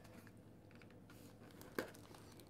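Very quiet handling noise, with one short sharp click near the end.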